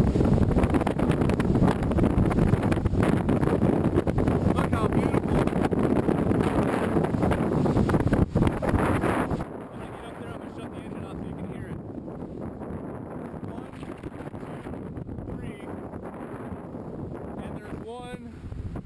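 Wind buffeting the camera's microphone, a loud rough rush that drops to a quieter steady rush about halfway through.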